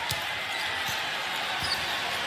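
A basketball dribbled on a hardwood court, three bounces about three-quarters of a second apart, over the steady din of an arena crowd.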